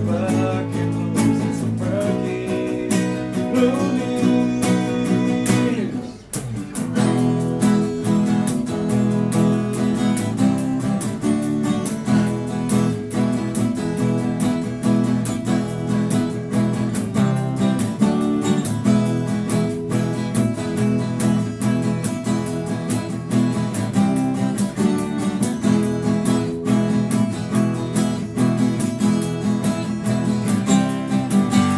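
Several acoustic guitars playing a blues instrumental passage together, strummed and picked. The playing drops away for a moment about six seconds in, then carries on.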